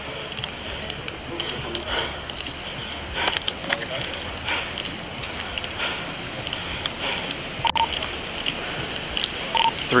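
Body-worn camera microphone picking up clothing rustle and footsteps as the wearer walks, with irregular scuffs and knocks. Two short beeps come near the end.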